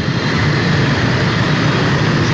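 Steady engine and road noise from a moving motor scooter in city motorbike traffic.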